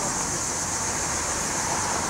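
Steady city street background noise: a constant rush of traffic with an even high hiss above it.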